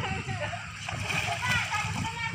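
Water splashing and sloshing as swimmers move and kick through a pool, with faint voices of children and adults in the background.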